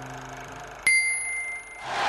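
A single bright bell ding about a second in, ringing on for about a second, over a faint held low tone. A noisy swell of sound rises near the end.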